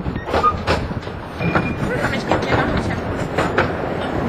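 Narrow-gauge railway carriage running along the track, heard on board: a steady rumble of the wheels with sharp clicks, often in close pairs, as the wheels pass over rail joints.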